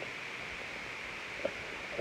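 Steady low hiss of room and recording noise, with one faint soft click about one and a half seconds in.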